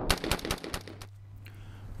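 Windham Weaponry AR-15 rifle firing steel-case rounds in a rapid semi-automatic string, the shots coming several a second and dying away about a second in.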